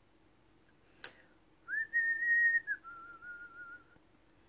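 A sharp click, then a person whistling softly to herself: one held note, then a lower, wavering note.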